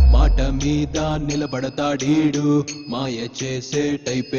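Telugu film song: vocals sung in short phrases over the backing music, with a deep bass sound in the first second or so.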